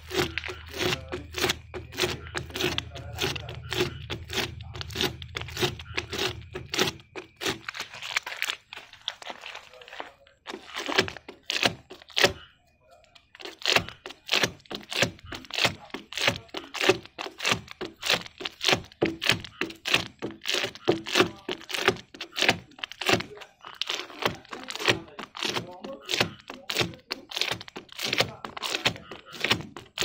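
Rapid, rhythmic rubbing and scraping strokes, about three a second, of a hand-held pad working dried tint-film glue off a plastic car headlamp lens. A dull low hum sits under the first seven seconds.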